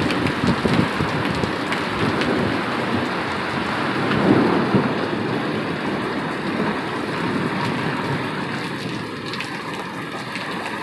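Heavy thunderstorm rain pouring steadily, with thunder rumbling. The rumble swells briefly about four seconds in.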